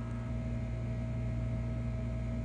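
A steady low electrical hum with a faint hiss, unchanging throughout.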